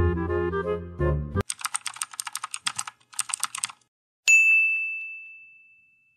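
Background music stops about a second and a half in. Two quick runs of computer-keyboard typing clicks follow, then a single bright bell ding about four seconds in that slowly rings out: a subscribe-reminder sound effect.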